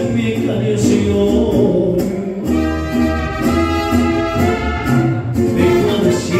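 Live mariachi band playing a song, with a male singer amplified through a handheld microphone. A long held note runs through the middle.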